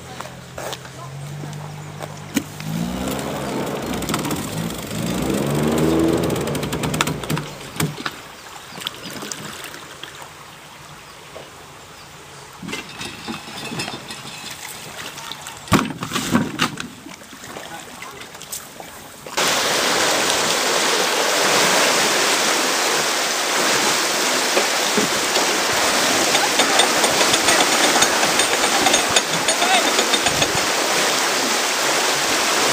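A low engine-like note that shifts in pitch, with faint voices and a few knocks. About two-thirds of the way in it cuts suddenly to the steady rush of water pouring through an opened lock paddle into the chamber.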